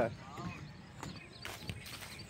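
Faint distant voices, with a few light clicks or knocks.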